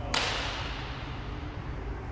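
A badminton racket strikes a shuttlecock once in a hard shot, giving a single sharp crack just after the start. It trails off over about half a second in the echo of a large sports hall.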